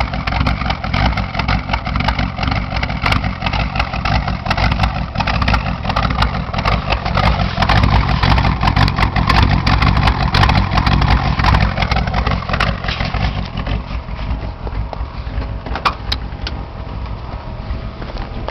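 Rebuilt Ford 302 small-block V8 in a 1984 Ford Ranger idling steadily at the tailpipe, still warming up after a cold start.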